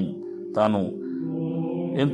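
Background music of steady, sustained held tones, like a drone, with one short spoken word about half a second in.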